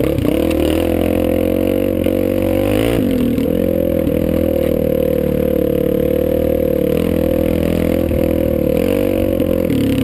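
Dirt bike engine running hard on a rough trail. Its pitch dips and climbs again about three seconds in and once more near the end as the throttle is eased and reopened.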